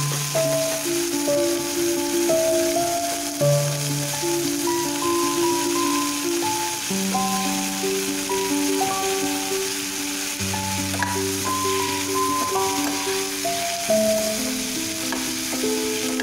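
Vegetables sizzling in oil in a kadai as they are stirred with a steel ladle, under instrumental background music: a melody of short stepped notes over held low notes.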